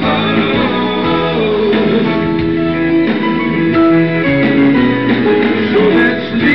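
Live band playing an instrumental passage led by guitar, with held melodic notes over the band's accompaniment and no singing.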